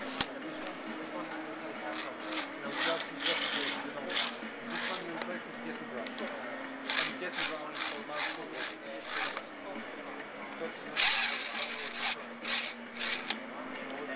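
Carbon-fibre tube sections of a telescopic water-fed pole sliding and rubbing against each other as the pole is collapsed, in a series of short, irregular scraping strokes. A sharp click comes right at the start, and the loudest scrape comes about three quarters in.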